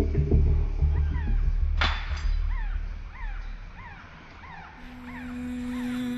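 Drum-heavy background music dies away over the first few seconds while a comic sound effect repeats about twice a second: short squeaky chirps, each rising and falling in pitch. A low held musical tone comes in near the end.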